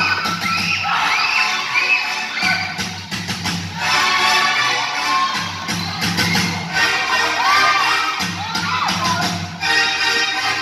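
Spectators shouting and cheering, with high voices rising and falling, over music with a steady low beat.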